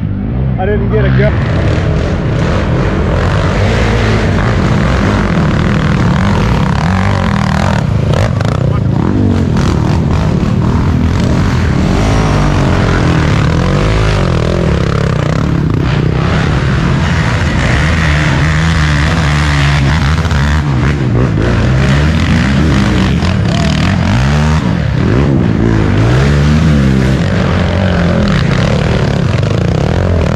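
Racing ATV engines revving hard and running under load as quads climb a steep dirt hill, the pitch rising and falling again and again as the riders work the throttle.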